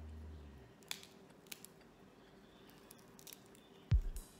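Background music fades out in the first second. After that come a few faint, sharp clicks of cooked crustacean shell being cracked and peeled by hand, and a louder knock just before the end.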